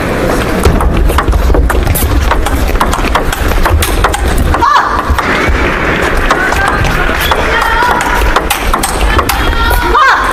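Table tennis rally: the plastic ball clicking sharply and irregularly off bats and table, with a short break about five seconds in as one point ends and the next begins. Music and voices run underneath.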